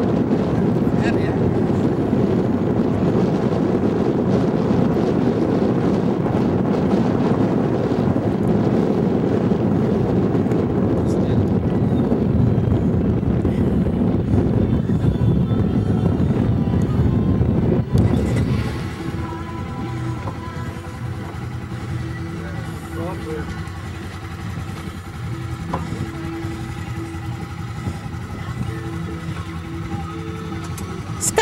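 Wind buffeting the microphone. About eighteen seconds in it gives way to a quad ATV engine idling steadily.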